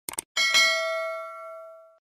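Subscribe-button animation sound effects: a quick double mouse click, then a notification-bell ding that rings out and fades away over about a second and a half.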